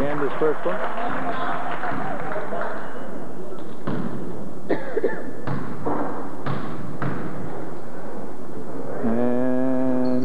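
A basketball bounced on a hardwood gym floor, about five separate thuds echoing in the gym, as a player dribbles at the free-throw line before shooting. Voices chatter at the start, and a single voice holds a long call near the end.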